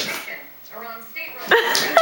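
Pet animal calling during a dog-and-cat scuffle: a short pitched call about three-quarters of a second in, then a louder wavering call starting about a second and a half in.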